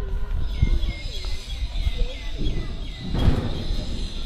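A bird calling in a quick run of short, falling chirps over a steady low rumble of outdoor ambience, with a brief hissing burst of noise about three seconds in.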